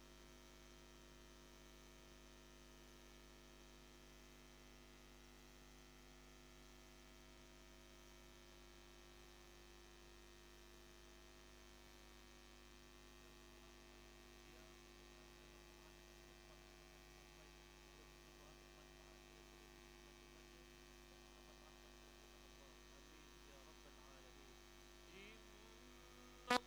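Near silence with a steady, faint electrical hum.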